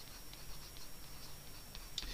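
Pencil writing a word on watercolour paper: faint, light scratching and small ticks of the tip.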